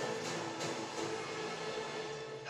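Movie trailer soundtrack: a sustained, droning music score with a couple of sharp hits in the first second.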